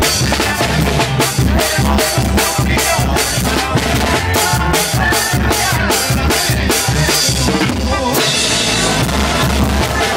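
Live banda music played loud, the drum kit close and dominant with a steady beat. About eight seconds in, the bass drops out for a moment and a hissing wash fills the gap before the full band comes back in.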